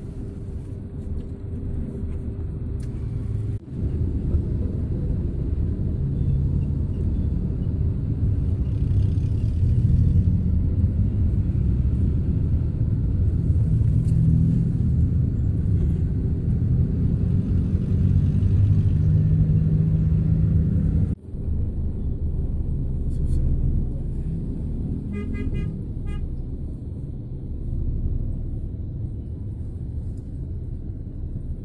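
Steady low rumble of engine and road noise heard from inside a moving vehicle in traffic, the engine note rising and falling. A vehicle horn sounds briefly near the end.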